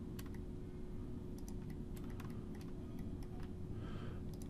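Computer keyboard keys and mouse buttons clicking irregularly and faintly as SketchUp tools are switched by keyboard shortcut, over a steady low hum.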